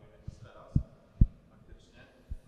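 Two low, dull thumps about half a second apart, a little under a second in, typical of handling noise on a hand-held microphone, with a fainter thump just before them.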